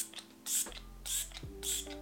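Fine-mist setting spray bottle pumped in quick succession: about four short hissing sprays in two seconds, over soft background music.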